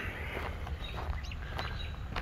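Small birds chirping faintly, a few short calls, over a steady low rumble.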